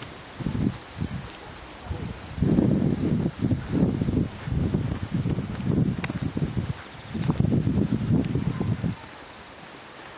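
Wind buffeting the microphone in irregular gusts of low rumble, dying down about a second before the end.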